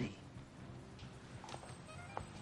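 Quiet sustained film underscore of low held tones during a pause in the dialogue, with a couple of faint ticks about a second and a second and a half in.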